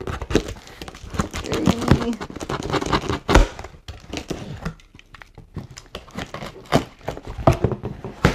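Box cutter slicing packing tape on a cardboard box, then the cardboard flaps being pulled open, with irregular scraping, tearing and rustling. There is a single heavy thump about three and a half seconds in.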